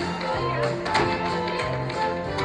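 Tap shoes striking a stage floor in a few sharp taps over a recorded show-tune backing track with sustained instrumental notes.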